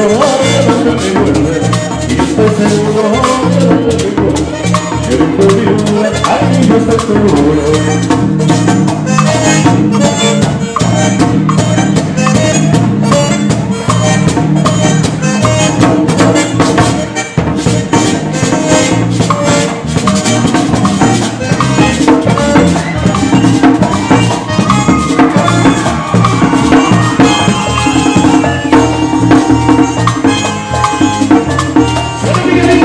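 Upbeat Latin dance music played steadily throughout, driven by hand drums and shaker percussion.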